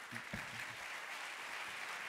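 Audience applause, a steady wash of clapping filling the hall.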